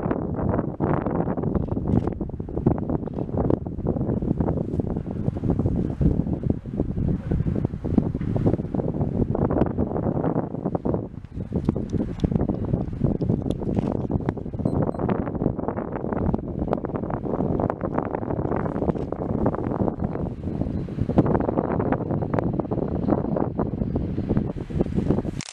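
Wind buffeting the microphone in irregular gusts, a loud rumbling noise that swells and dips throughout.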